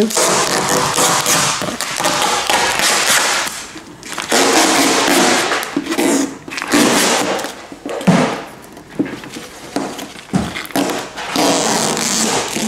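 Car-wrap vinyl foil rustling and crinkling in irregular bursts as it is handled and the cut-off excess is pulled away from a car door.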